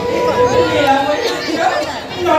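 A performer's voice speaking stage dialogue, with a held musical note that stops about half a second in.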